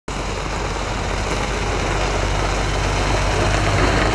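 Semi-truck's diesel engine running as the truck drives slowly past, a steady low engine sound growing gradually louder as it comes closer.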